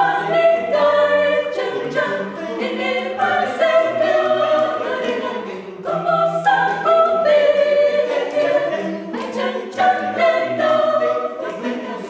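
Mixed choir of men's and women's voices singing in parts, holding chords in long phrases, with a brief break about six seconds in.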